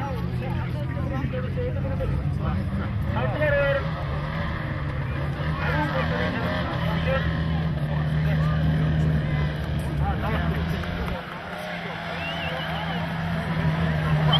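A car engine running steadily close by, its hum stepping up in pitch about seven seconds in and dropping off about eleven seconds in, under scattered voices of people talking.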